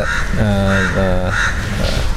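A man speaking, with crows cawing several times behind the voice.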